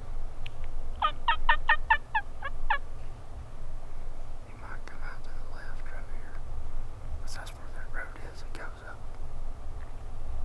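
Merriam's wild turkey gobbling: one loud rattling gobble about a second in, followed by fainter gobbling later on.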